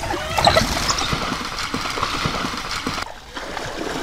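Water splashing and churning as a hippo moves through a river: a loud, steady rush of disturbed water, with a few short high calls about half a second in and a brief drop a little after three seconds.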